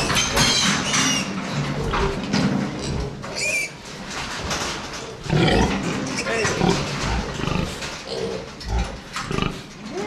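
Piglets squealing in loud, irregular bursts as they are caught and held up by hand beside the sow's crate.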